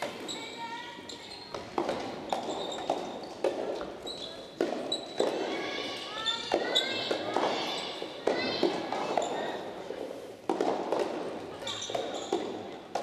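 Soft tennis balls thudding on a hardwood indoor court and off rackets, a string of irregular knocks about every half second to second, echoing in a large hall, with voices mixed in.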